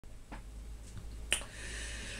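Light handling clicks as the camera is set up by hand, the sharpest about two-thirds of the way in, followed by a soft hiss.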